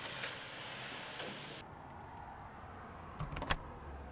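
Newspaper rustling and crinkling, which cuts off abruptly about a second and a half in. Then comes quieter ambience with two or three sharp knocks a little past three seconds in.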